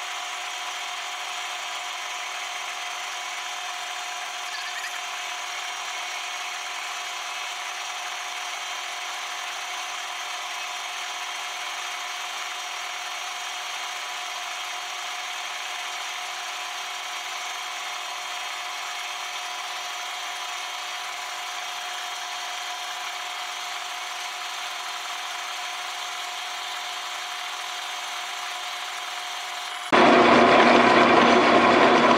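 Metal lathe turning down a steel shaft, the cutting tool taking a steady cut with a constant high whine running through it.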